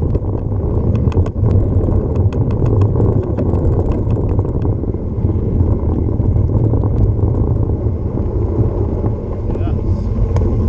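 Mountain bike rolling fast down a dirt trail and onto gravel: a steady rumble of tyres and wind on the microphone, with sharp rattling clicks from the bike over bumps, thickest in the first few seconds.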